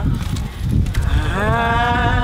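A woman's voice singing one long held note that starts about a second in, over a low rumble of wind and movement on the microphone.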